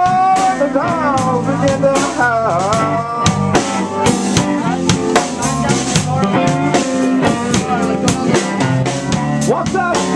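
Live blues band playing an instrumental stretch between verses: mandolin, electric bass, electric guitar and drum kit over a steady beat. A lead line of bending, sliding notes runs through the first few seconds.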